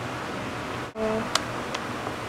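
Steady hiss of room tone and microphone noise, broken for an instant about a second in where the picture cuts, then two small sharp clicks.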